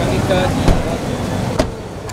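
Car door being shut: a heavy thump about two-thirds of a second in and a sharper knock shortly before the end, over background voices.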